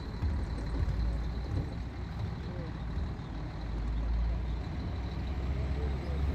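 Bus engine running, a steady low drone heard from inside the passenger cabin, with faint voices in the background.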